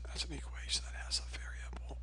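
A man's voice speaking quietly, almost whispering, with sharp hissing s-sounds, over a steady low hum on the recording.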